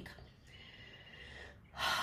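A brief quiet pause, then a woman's quick intake of breath through the mouth near the end, taken before she speaks again.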